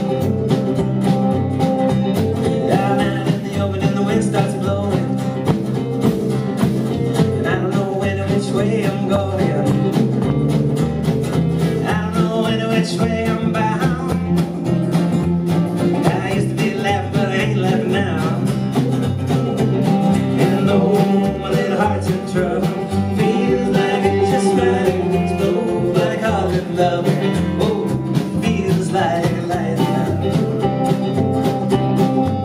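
Live country-folk band music: two strummed acoustic guitars over an upright double bass, playing steadily with no break.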